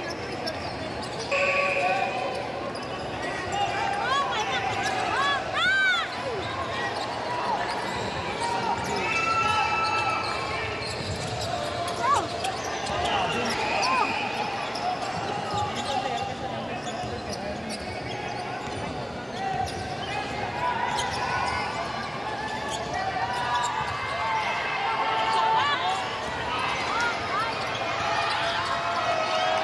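Basketball game in an indoor gym: the ball bouncing on the hardwood court and short sneaker squeaks, over the steady chatter and calls of the crowd.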